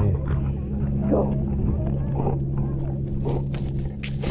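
Bernese mountain dog growling low and steadily in a tug-of-war over a stick, heard close up from a camera strapped to the dog. The growl breaks off briefly about halfway through, and a few short higher noises and clicks sound over it.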